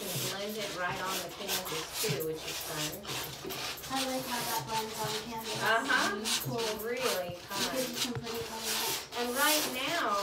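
Voices talking indistinctly over the scratchy rubbing of palette knives spreading paint on canvas.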